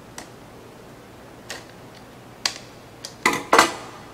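Hand Phillips screwdriver driving the small end-cap screws back into a plastic light-duty wireless tow light: sharp clicks about a second apart, then two louder metallic clinks with a short ring near the end.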